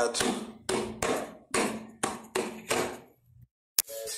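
A run of about six sharp percussive strikes from the song's accompaniment, each dying away, roughly half a second apart: the closing hits that end the song. They stop about three seconds in, leaving a short gap broken by a single click.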